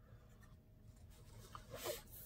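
Quiet room with faint rustling and scraping of hands handling small parts and tools on a desk.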